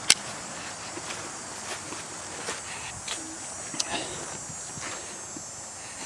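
A few soft footsteps and rustles in grass over a quiet outdoor background, with a sharp click right at the start.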